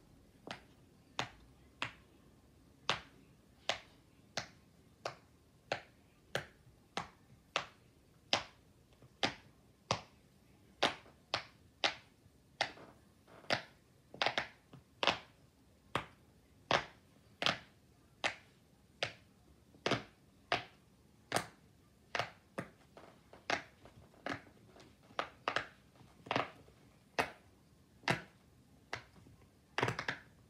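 Bubbles of a silicone pop-it fidget toy being pressed through one by one: a long, steady run of sharp pops, a little under two a second, uneven in loudness.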